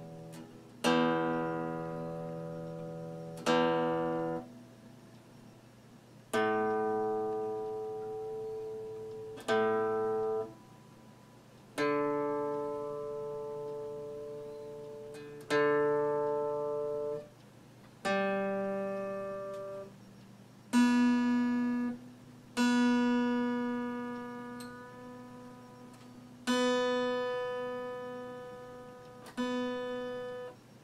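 Acoustic guitar played slowly as single strummed chords, about eleven in all, each left to ring and fade for two to three seconds before the next.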